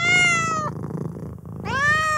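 A domestic cat meowing twice, each meow rising then falling slightly in pitch, over a low steady purr.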